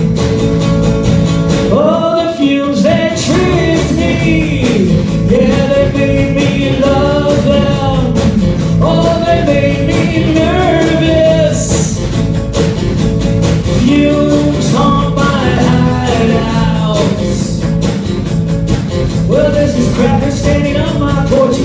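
Live rock song: a male lead vocal sung over acoustic guitar and a drum kit.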